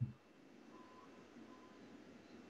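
A short knock, then faint short beeps at one steady pitch, about one a second, over low background noise.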